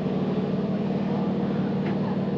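Vehicle engine idling: a steady low hum, with a faint tick near the end.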